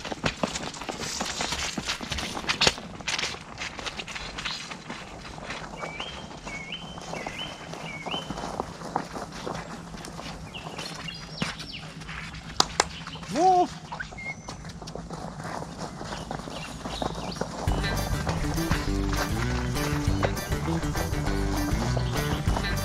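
Quiet outdoor field sounds with scattered knocks and a short repeated chirping call, then background music with a steady beat comes in about four seconds before the end.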